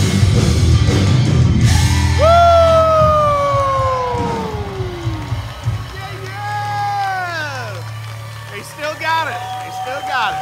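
Live rock band winding down a song. The full band plays for about two seconds, then a long note slides down in pitch, followed by several shorter downward slides over a sustained low bass note, with crowd whoops.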